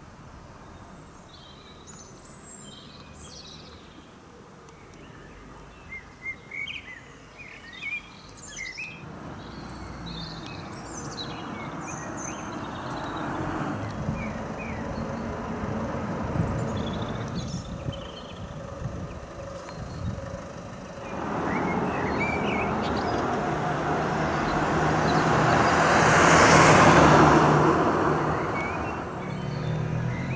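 Small birds chirping in short calls, then cars passing on the road one after another, each a swell of tyre and engine noise that builds and fades. The loudest pass comes about three-quarters of the way through.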